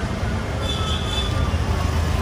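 Steady low rumble of background vehicle noise, with a brief faint high tone about a second in.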